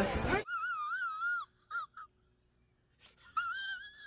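A high-pitched voice holding a long, wavering wail, then two short blips, a pause, and a second held wail near the end.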